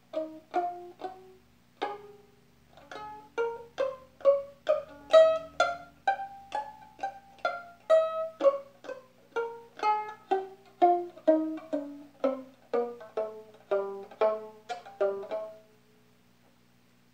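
Violin played pizzicato, one plucked note at a time. A few scattered notes come first, then a steady run of about two or three notes a second that stops just before the end.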